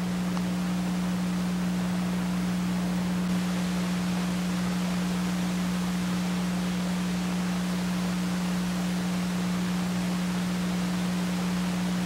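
Steady electrical hum with an even hiss and nothing else: the mains hum and tape noise of an old broadcast recording.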